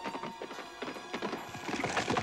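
Horse's hooves clip-clopping on hard ground, a run of quick, uneven hoofbeats that grows busier in the second half, over background music.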